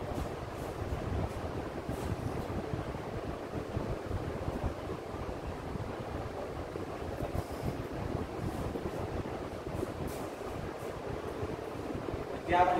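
Steady low rumbling background noise with no speech, with a few faint ticks.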